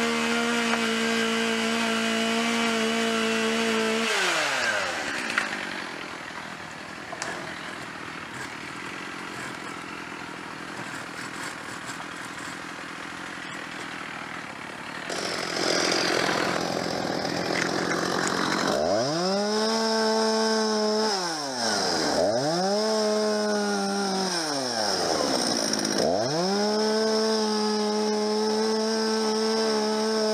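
Chainsaw cutting hazel stems. It runs at full throttle, drops away about four seconds in, and after a quieter stretch is revved up and let off twice before holding full throttle near the end.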